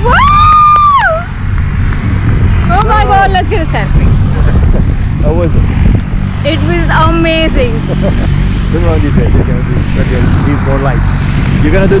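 Excited human voices: a long, high held whoop at the start, then several short exclamations, over a steady low rumble.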